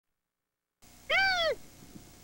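A single high-pitched shouted cry in a character voice, rising and then falling in pitch, about half a second long and starting a little after a second in.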